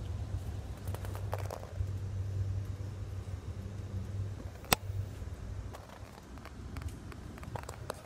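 Inside a passenger rail coach: a steady low hum with scattered small clicks and rattles, and one sharp click a little past halfway.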